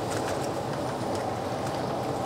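Large aluminium stockpot of water at a rolling boil on a commercial gas burner: a steady bubbling rush of even loudness, the water heated to blanch chicken leg pieces.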